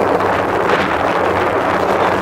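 Wind buffeting the camcorder's microphone: a steady, loud rushing noise.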